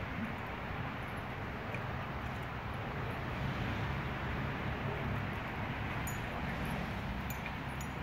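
Steady low outdoor background rumble, with a few faint clicks near the end.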